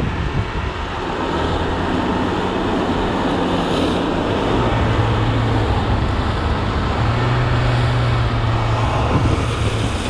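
Steady rush of wind and road noise at speed during a downhill longboard run, with a low hum underneath that shifts in pitch partway through.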